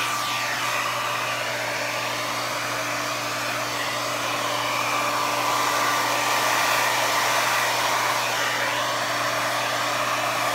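Handheld Revlon hair dryer running continuously, a steady blowing whine with a thin tone on top, blowing across wet acrylic paint on a canvas. It gets slightly louder midway through.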